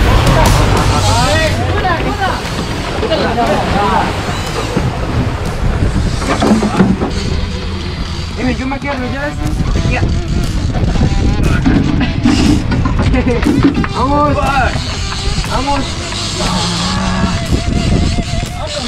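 Voices and music over the steady low rumble of a boat's engine and the wash of water.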